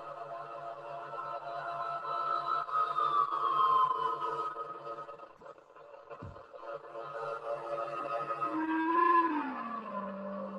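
Modular synthesizer jam: sustained electronic drone tones over a pulsing low note, with slow falling pitch glides about three seconds in and again near the end. The sound is lo-fi, coming out of a small tape recorder.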